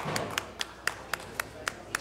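One person clapping hands at a steady pace, about four claps a second, eight claps in all.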